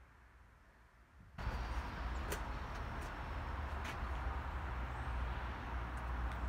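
Steady low rumble and hiss of outdoor background noise that cuts in suddenly about a second and a half in, after near silence, with a couple of faint clicks.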